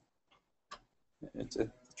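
A short soft click, then a faint, distant voice answering in the second half, a student replying from the room.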